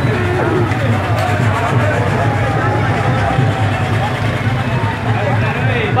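Crowd of people talking and calling out over one another, over a steady low rumble of motor vehicles.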